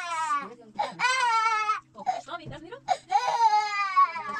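A toddler crying hard while being bathed in a plastic basin: loud, high wails, one ending just after the start, another about a second long, and a third near the end that slides down in pitch.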